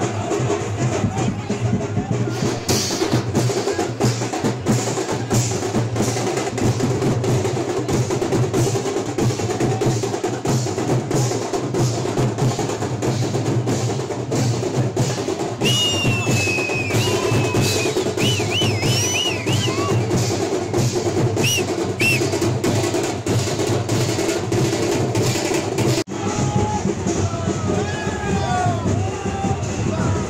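Drums beating a fast, steady rhythm at a street procession, with shrill whistle-like gliding notes over them for a few seconds midway. About four seconds before the end the sound cuts abruptly to voices over music.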